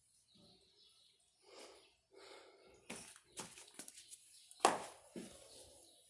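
Faint handling sounds of a paintbrush and painting materials on a tabletop: soft rustles and a few light clicks and taps, the sharpest about two-thirds of the way through.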